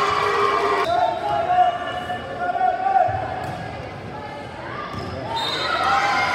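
Volleyball in a gym: players and spectators shouting and cheering in drawn-out calls as points are won, near the start and again near the end, with the ball being struck in between. The echo of a large hall.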